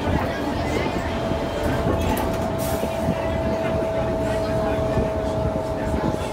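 Inside a moving Ikarus 435 articulated bus: the running diesel engine and drivetrain with tyre and road noise and rattling of the body and doors, and a thin steady whine held from about a second in.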